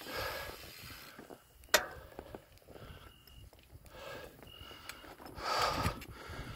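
Bicycle rolling over a rough dirt path with the rider breathing, and one sharp click a little under two seconds in: the front bike light's switch being pressed to turn it off.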